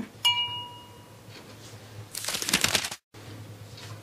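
A single bright glass clink that rings and fades over about a second, then, about two seconds in, a short noisy sip from a glass mug. The sound cuts out abruptly soon after.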